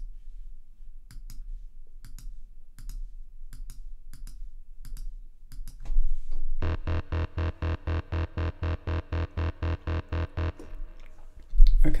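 Mouse clicks for the first six seconds, then the VPS Avenger software synthesizer's DeepHouse Bass 1 preset runs through its arpeggiator: the same short bass note repeated evenly about six times a second for about four seconds. A loud low thump comes just before the end.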